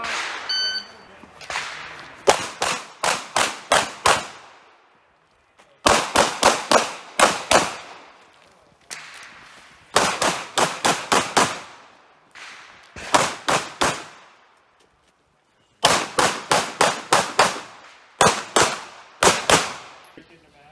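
A shot timer beeps once about half a second in, then a pistol fires in six quick strings of roughly five to eight shots each, with pauses of one to two seconds between the strings as the shooter moves between positions on a USPSA stage.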